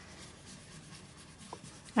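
Faint scratching of a brown colouring stick scribbled in loops over paper, colouring in a drawing.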